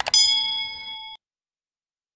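Subscribe-button animation sound effect: two quick mouse clicks, then a bright bell-like ding that rings for about a second and cuts off abruptly.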